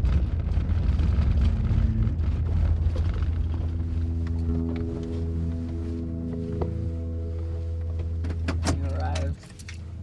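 Low rumble of a truck driving, heard from inside the cab, which cuts off suddenly near the end. Background music with sustained notes comes in partway through.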